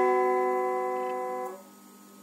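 Clean electric guitar letting a held note ring and slowly fade, stopped short about one and a half seconds in, leaving a brief pause.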